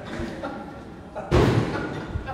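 A single loud thud about a second and a half in, with faint voices around it.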